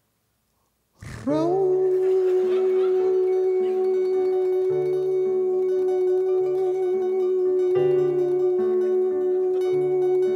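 After about a second of near silence, a man's voice slides up into one long held sung note over chords played on a digital stage keyboard, the lower notes changing in a steady rhythm.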